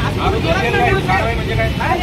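Speech: a voice talking continuously in Marathi, with a steady low rumble of street noise underneath.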